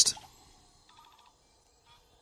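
Faint forest ambience from a film trailer's soundtrack: quiet, steady insect-like high tones with a few soft chirps.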